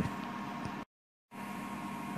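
Steady low hiss with a faint hum, cut off completely for about half a second around a second in, where the recording is spliced, then resuming.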